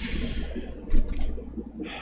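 A breath out, then a few separate clicks at a computer keyboard, about a second in and again near the end.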